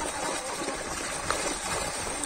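Steady splashing and churning of water as a mass of fish thrash inside a seine net that is being drawn in.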